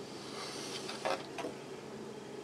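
Faint handling noise as a motherboard is turned over on a wooden desk, with a couple of light knocks a little after a second in.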